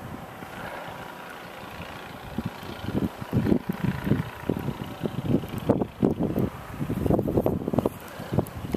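Wind buffeting the camera microphone outdoors: a steady low hiss that turns, about two and a half seconds in, into irregular, loud low rumbling gusts.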